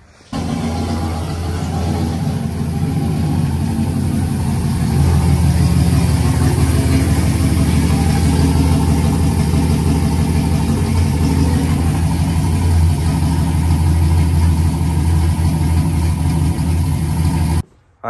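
Pickup truck engine idling steadily with a deep, even tone, a little louder from about five seconds in.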